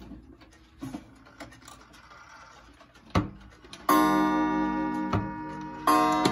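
Wooden pendulum wall clock ticking, then its coiled gong striking the hour. The first strike comes near the middle and a second about two seconds later; each rings on and slowly dies away.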